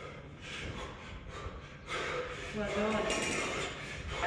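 A man breathing hard in quick, noisy breaths while holding two kettlebells in the rack during a long-cycle set, the breathing of heavy exertion. A man's voice comes in about halfway through.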